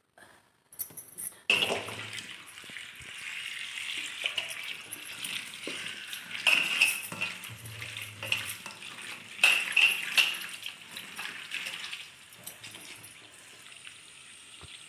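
Kitchen tap running into a steel bowl of ivy gourds while a hand swishes and rubs them to wash them. The water starts about a second and a half in and runs on steadily, with louder splashing in a few places.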